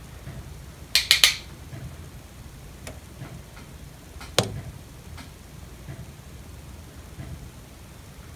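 Sharp clicks of an eyeshadow brush and palette being handled: a quick run of three clicks about a second in, then a single tap a few seconds later, with a few faint ticks between over a low hum.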